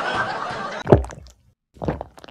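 A person drinking water from a glass: a noisy sipping sound, then a short sharp sound about a second in.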